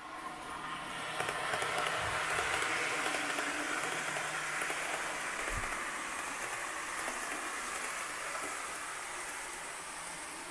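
N gauge model train running across the layout: a steady rolling rush of wheels and motor that swells over the first couple of seconds and slowly eases off.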